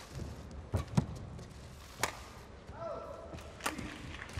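Sharp racket strikes on a shuttlecock and thuds of players' feet during a badminton rally, several hits spaced about a second apart. A brief squeak, falling in pitch, comes near three seconds in.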